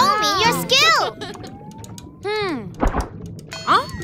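Cartoon character voices making short wordless exclamations over light children's background music, with a soft thunk about three seconds in.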